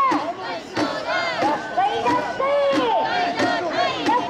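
Crowd of mikoshi bearers shouting carrying chants together as they shoulder the portable shrine, many voices overlapping in long, drawn-out calls over the general noise of the crowd.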